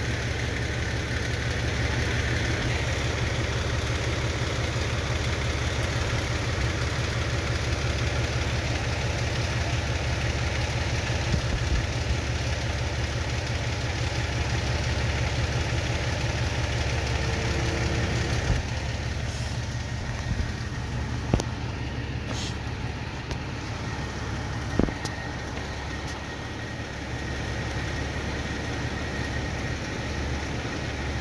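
Fire engine idling with a steady low rumble, and a few short knocks in the second half.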